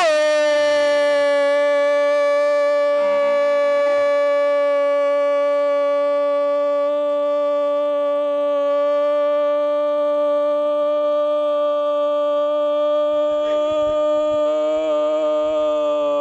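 A football commentator's long drawn-out goal cry, a single "goool" held on one steady pitch for many seconds without a breath.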